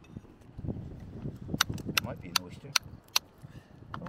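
Small hammer striking a flat rock ledge: five sharp, ringing taps in the second half, about two and a half a second.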